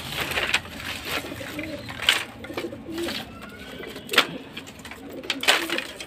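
Pigeons cooing softly now and then, mixed with several sharp knocks or slaps, the loudest about two and four seconds in.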